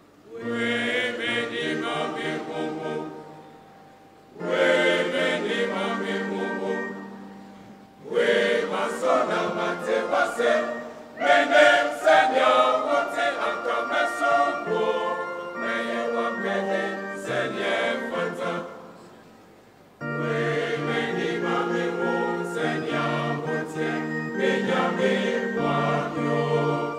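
A mixed choir of men's and women's voices singing in parts, in phrases broken by short pauses.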